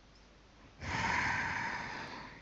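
A person's breath into a microphone: a sudden, loud rush of air, as in a heavy exhale or snort, starts a little under a second in and fades away over a second or so.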